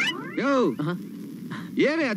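A short pitched cry that rises and then falls, with a shorter one right after it. A voice starts speaking near the end.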